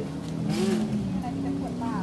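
A steady low hum from a running motor, under brief quiet voices.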